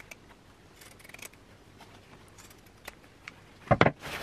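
Pinking shears cutting through fabric seam allowances in faint, scattered snips, then two loud clacks close together near the end.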